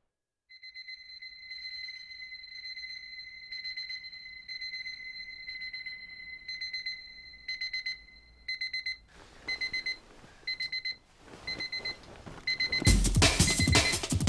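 Electronic alarm clock going off: a high electronic tone that holds nearly steady at first, then breaks into short beeps at about two a second. Near the end, loud drum-led music starts over it.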